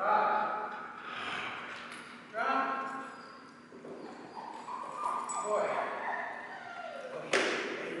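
A person's voice speaking to a dog in short phrases, then one sharp crack near the end that rings briefly in the large hall.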